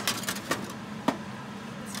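Metal baking pan clattering against the wire rack of a countertop toaster oven as the pan is handled: a cluster of rattling knocks at the start, then single sharp clinks about half a second and a second in, over a steady low hum.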